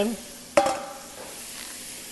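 Ground turkey and diced vegetables sizzling steadily in hot skillets, with a sharp knock and a brief ring about half a second in.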